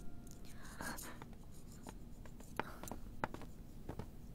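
Faint, scattered light clicks and taps, with a brief soft murmur about a second in.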